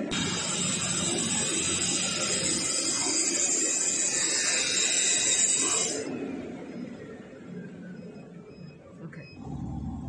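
CNC flatbed fabric cutting machine running, heard as a loud, steady rushing hiss. About six seconds in it drops abruptly to a quieter running sound with a faint, broken high whine.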